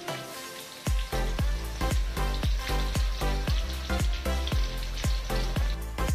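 Tofu cubes deep-frying in a wok of hot oil, sizzling. About a second in, background music with a steady, heavy beat comes in and is louder than the frying.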